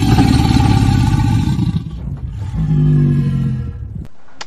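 A whoosh-and-rumble sound effect for an animated fire title: a loud rush of noise with a deep rumble that eases after about two seconds into a lower droning tone, fading near the end.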